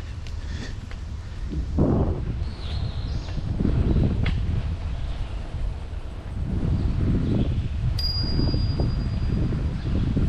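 A bicycle bell dings once about eight seconds in, a bright single note that rings on for more than a second, over a low, uneven rumble of wind and movement on the microphone.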